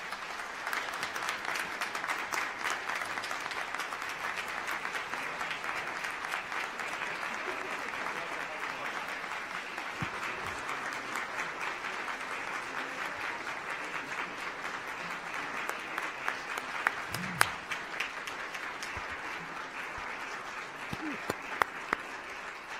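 Large audience applauding, a long steady round of clapping that thins out near the end.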